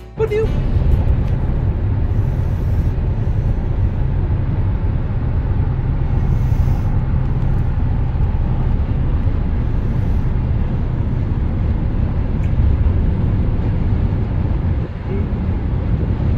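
Steady low road and engine rumble inside a car's cabin at freeway speed.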